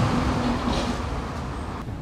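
Steady hissing as a Honda CT125's front brake caliper pistons are cleaned with brake-cleaner spray and a cloth, fading away near the end.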